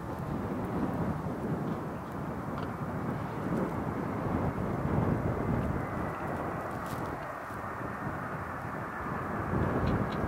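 Twin-engine Boeing 737 jet airliner's engines running as it rolls along the runway: a steady broad rumble, with a faint fan whine that comes in about six seconds in and slowly falls in pitch.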